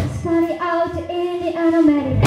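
A woman's lead vocal holding a long sung line in a live rock band, with the drums dropped out and only a low accompaniment beneath it.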